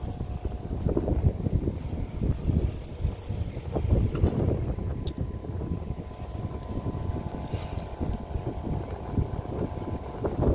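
Wind buffeting a phone's microphone: an uneven, gusty low rumble that rises and falls throughout, with a faint steady tone underneath.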